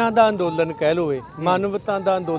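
Speech only: a man talking in Punjabi.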